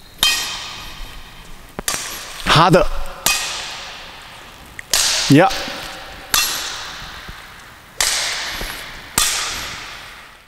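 Badminton racket strings striking a shuttlecock in a rally of clears: seven sharp cracks about every second and a half, each ringing out in the echoing hall.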